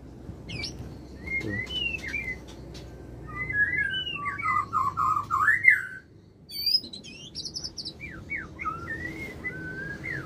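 Male white-rumped shama singing a varied run of whistles and chirps, his courtship song to a female. The loudest part is a warbled passage from about four to six seconds in, followed around seven seconds by a quick series of high notes.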